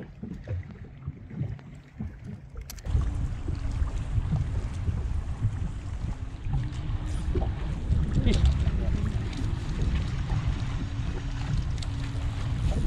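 A short laugh, then about three seconds in a steady low rumble of wind on the microphone starts suddenly. It runs on with a hiss over it and a faint hum that comes and goes.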